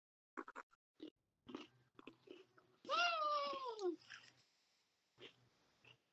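Faint crunching and chewing of crisp chocolate sandwich cookies (Oreo Space Dunk), a run of small cracks and clicks. About three seconds in, a person makes a wordless vocal sound lasting about a second and falling in pitch.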